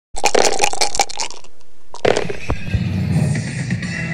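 Intro music with sound effects: a quick run of sharp hits for about a second, a short lull, then a hit at about two seconds that launches the music.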